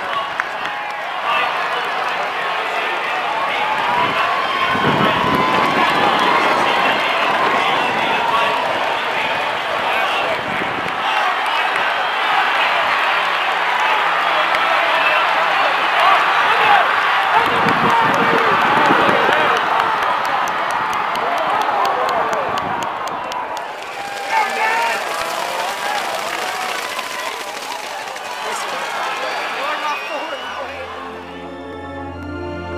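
Racetrack grandstand crowd cheering and yelling while a horse race is run. It builds to its loudest as the field comes down the stretch, then drops off a little before three-quarters of the way through, giving way to a looser mix of crowd voices.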